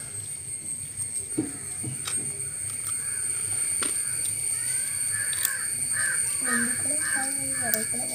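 A bird calling repeatedly, the calls coming faster from about the middle onward, with a person's voice near the end and a few light taps of paper handling early on.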